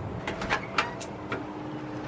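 A front door being unlocked: a quick string of sharp metallic clicks from keys and the lock.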